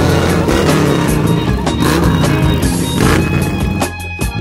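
Music track with a beat, with a Harley-Davidson-style touring motorcycle's engine running underneath as the bike rides slowly past.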